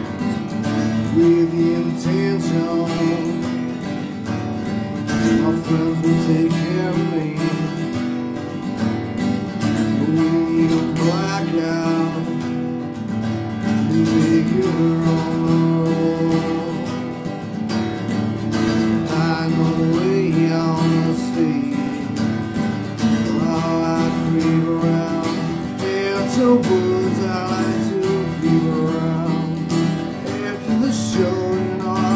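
Acoustic guitar strummed in a steady rhythm, playing an instrumental passage of a solo song.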